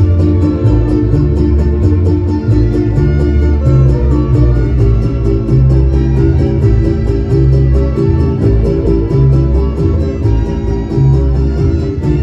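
Danzón music from a band, with sustained low notes over an even, high ticking beat of about four strokes a second.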